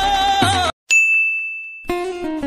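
A single high, bell-like ding sound effect that rings out and fades over about a second, after music cuts off abruptly with a brief moment of silence. Acoustic guitar music starts just before the end.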